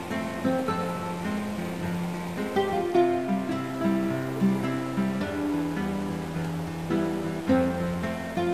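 Background music: an acoustic guitar playing a melody of plucked notes and strums.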